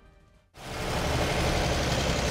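A steady engine rumble with a broad hiss, a military vehicle sound effect, fading in about half a second in after a brief silence.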